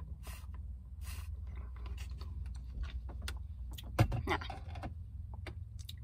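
Large plastic slushie cup with lid and straw being sipped from and handled: scattered small clicks and creaks of plastic, with one louder sound about four seconds in, over a steady low rumble.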